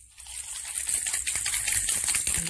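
A plastic baby rattle being shaken, its beads clattering in quick, irregular clicks that pick up after a brief lull at the start.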